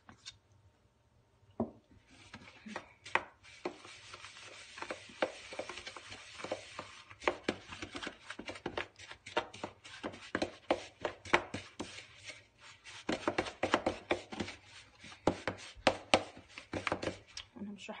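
A metal spoon scraping and knocking against a plastic bowl while stirring buttery biscuit crumbs and melted chocolate together. It is a fast, irregular run of scrapes and clicks that begins about a second and a half in.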